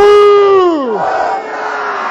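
A man's long shouted rally call over a microphone and PA, rising sharply, held, then falling away after about a second. A crowd of voices shouts back.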